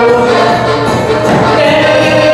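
Live dance music from a small Polish backyard-style folk band led by accordion, playing steadily and loudly.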